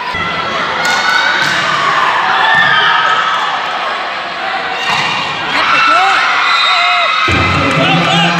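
Volleyball rally in a reverberant gym: a few sharp smacks of the ball being hit, over continuous shouting from players and spectators. About seven seconds in, louder cheering breaks out as the point is won.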